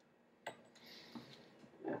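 A light click about half a second in, and a fainter tap a little after a second, as copper mod parts are set down on a wooden tabletop.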